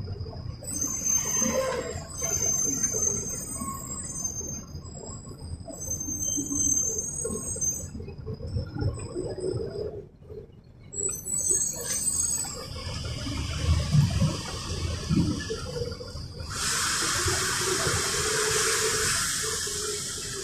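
Interior of a moving Mercedes-Benz city bus: low engine and road rumble with rattles and high squeaks from the body. About sixteen seconds in, a steady hiss of compressed air starts and runs for about three and a half seconds.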